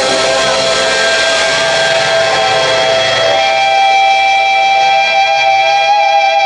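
Heavy metal band playing live, loud: long held distorted electric guitar notes ring over bass. About halfway through the low end drops away, leaving a sustained high guitar tone.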